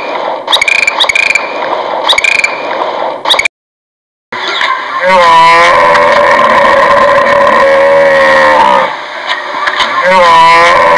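Dolphin chirping: short whistles with clicks, repeated about twice a second, then cut off. After a brief silence, a hippopotamus call: one long pitched call that slides down at its start and holds for about four seconds.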